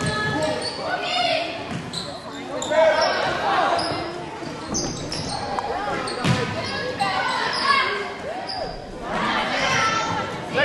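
A youth basketball game in a reverberant school gym: the ball bouncing on the hardwood floor, with indistinct shouts from players and spectators around it.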